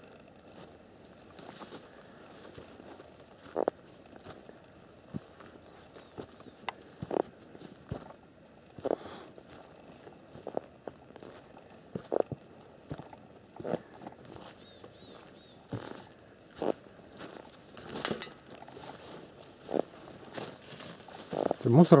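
Footsteps crunching through dry grass and brush, irregular steps roughly one a second with some sharper snaps.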